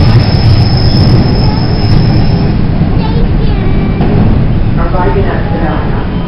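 Toronto subway train running through the tunnel and into a station, a loud steady rumble of wheels on rails heard from inside the car. Voices come in over it in the second half.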